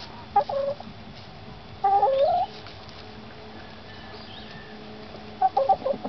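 Domestic hens clucking: a short call about half a second in, a longer call stepping up in pitch about two seconds in, and a quick run of clucks near the end.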